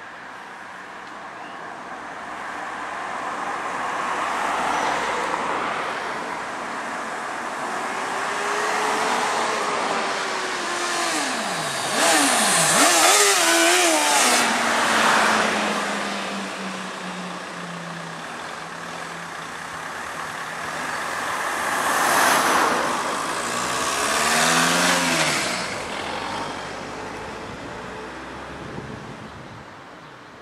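A Suzuki GSX650F inline-four motorcycle passing twice, revving and accelerating hard, loudest about twelve seconds in and again about twenty-two seconds in. Its engine note glides down as it moves off after the first pass. Ordinary car traffic passes more quietly.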